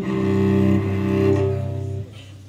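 Live orchestral strings, cello and double bass to the fore, holding a sustained low chord that cuts off near the end.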